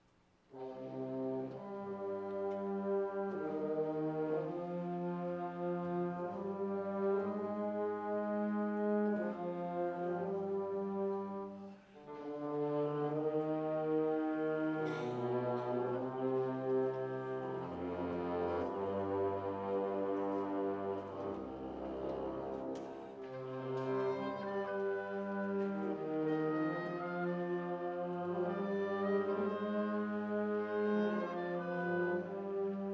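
Concert wind band starts playing about half a second in: sustained chords led by brass, with French horns and clarinets, over a low bass line that moves step by step. The sound dips briefly near twelve seconds, then the chords carry on.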